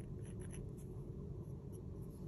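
Faint light taps and scratches of a fine paint tool on a painted wooden earring blank, a few of them about half a second in, over a low steady room hum.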